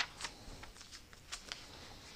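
Thin Bible pages being leafed through to find a passage: soft, crisp paper flicks and rustles, the sharpest right at the start and several lighter ones after it.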